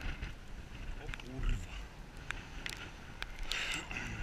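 A man's wordless grunts and breathy vocal sounds, the loudest about a second and a half in, amid close rustling of clothing and wet grass and a few sharp light clicks of handling the fishing gear.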